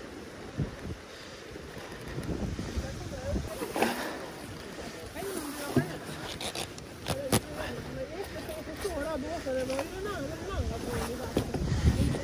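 Water splashing and lapping against a wooden jetty while a magnet-fishing rope and its catch are hauled up, with a few sharp knocks. A faint voice is heard in the second half.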